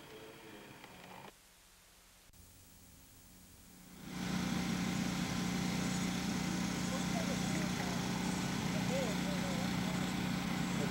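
A steady low hum with a broad hiss starts abruptly about four seconds in, after a few quiet seconds. Faint voices come in over it in the second half.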